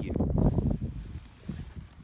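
Low rumbling, rustling noise on a handheld phone's microphone as it is carried across a lawn, loudest in the first second and fading after.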